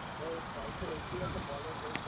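Faint distant voices of players across an open field, then a single sharp crack of a cricket bat striking the ball just before the end.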